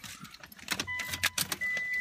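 A car being started up from the driver's seat: a run of sharp clicks and rattles from the keys and ignition, then a steady high electronic tone comes on about a second in and holds.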